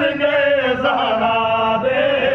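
A man singing in a slow, chant-like style, holding long notes that slide up and down in pitch.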